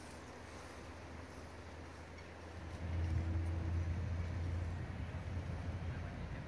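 A low rumble that swells about three seconds in and holds, with a brief faint hum over it.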